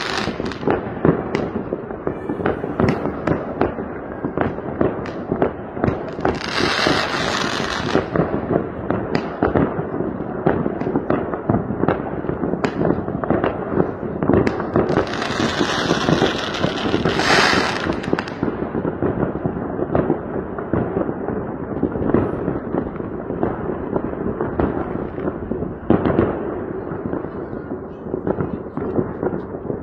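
Many fireworks and firecrackers going off together: a constant rattle of bangs and cracks, with a longer hissing rush about a quarter of the way in and again past the middle.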